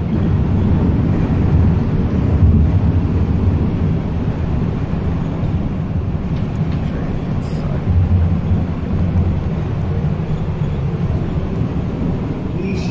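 Airport people mover train running, a steady low rumble heard from inside the passenger car.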